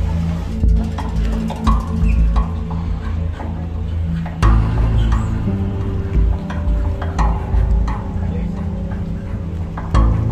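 Music with a steady bass line and a drum beat.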